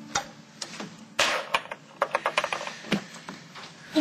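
Glassware clinking and knocking as a drink is poured from a glass decanter on a bar tray: a few separate clicks, a brief noisy splash about a second in, then a rapid run of small glass clicks.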